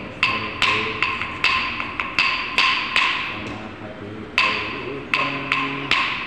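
Kuchipudi dance accompaniment: sharp, briefly ringing beat strikes, about two to three a second with a short break past the middle, over a low singing voice.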